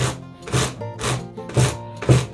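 Wooden packer brush stroked repeatedly through merino roving on a blending board's carding cloth, about four brushing strokes roughly half a second apart, over background music.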